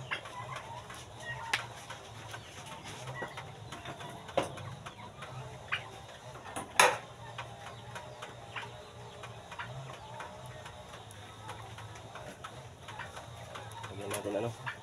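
Faint bird calls over a low steady background hum, with a few sharp clicks; the loudest click comes about seven seconds in.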